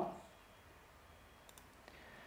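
A few faint computer mouse clicks close together near the end, over quiet room tone.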